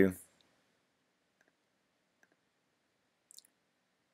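Faint, sharp clicks of a computer mouse: a few single clicks spaced about a second apart, then a quick cluster of clicks about three seconds in.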